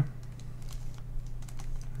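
Plastic Redi Cube corner-turning puzzle being turned by hand: a quick run of light plastic clicks as its corners are twisted.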